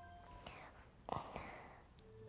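Soft whispered breaths from a person, twice, about half a second and just over a second in, after the last notes of gentle music fade.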